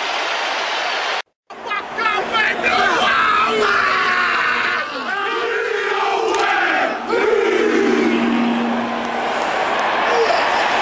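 Stadium crowd noise that cuts off about a second in. Then shouted All Blacks haka calls and chanted responses ring out over the crowd, with one long drawn-out call near the end.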